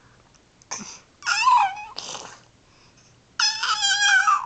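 An infant's high-pitched squealing vocalizations: a short wavering squeal about a second in and a longer one near the end, with brief breathy sounds between.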